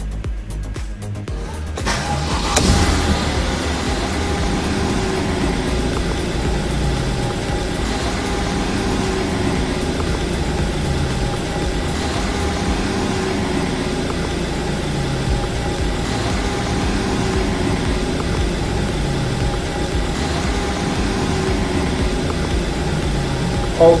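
Mercedes-Benz E-Class engine starting about two seconds in, then idling steadily, heard from inside the cabin. Background music plays over it.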